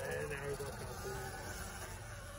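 Sur-Ron electric dirt bike's motor whining faintly and steadily as the bike rides off up the trail.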